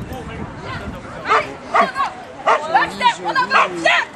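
Australian Shepherd barking excitedly while running an agility course: a quick series of short, sharp barks starting about a second in, a few each second.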